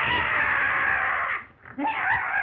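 A long, harsh scream lasting about a second and a half that breaks off, then a second shorter cry starting near the end. The sound is thin and noisy, typical of an early-1930s film soundtrack.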